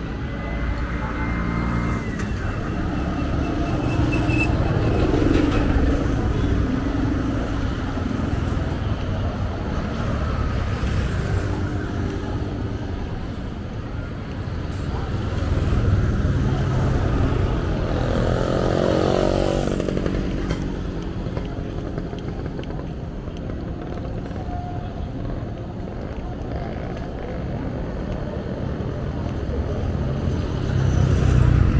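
Roadside traffic: motorcycles and cars driving past, their engines swelling and fading, with one vehicle going by about two-thirds of the way through, its engine pitch falling as it passes.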